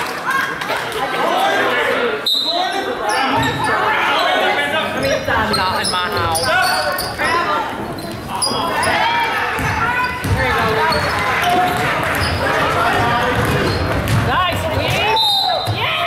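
Many spectators' voices chattering and calling out in an echoing gymnasium, with a basketball bouncing on the hardwood court and a sharp bang about two seconds in.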